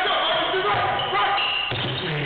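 A basketball being dribbled on a hardwood gym floor, heard under music and voices in the hall.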